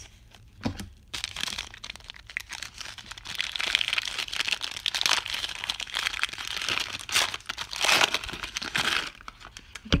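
Paper gift wrapping on a bar of soap crinkling and rustling as it is unwrapped by hand, starting about a second in, with a few sharper crackles near the end.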